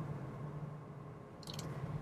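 Faint, steady low hum and room tone inside the cabin of a Volkswagen ID. Buzz electric van moving slowly. A short mouth noise comes from the driver near the end.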